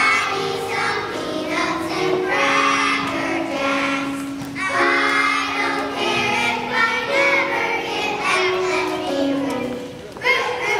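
A children's choir singing together in phrases, accompanied by an upright piano, with a short break between phrases about four and a half seconds in.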